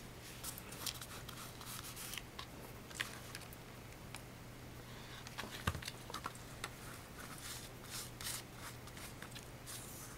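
Hands rubbing and pressing fabric down onto board: soft rustling with scattered light taps, and one louder knock about halfway through.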